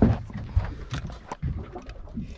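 A few sharp knocks and thumps on a boat deck as a large fish is handled, over a steady low rumble.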